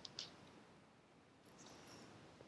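Faint page turn of a picture book: a soft paper tick just after the start and a light paper rustle in the last half second.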